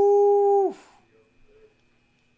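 A man's long, held "woo" of excitement: one steady note that drops in pitch and cuts off under a second in.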